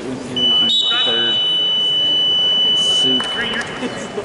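Scoreboard buzzer sounding one long, steady, high-pitched tone for about three and a half seconds, starting about half a second in: the signal that the wrestling period has ended.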